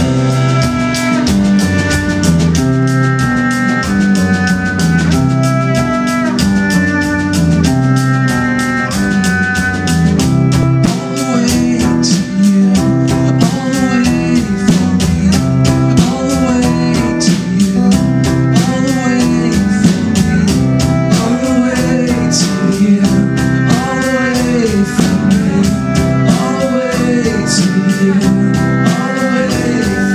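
Live band playing an instrumental passage: a steady drum-kit beat under acoustic guitar, cello and electric guitar, with some sliding melodic notes.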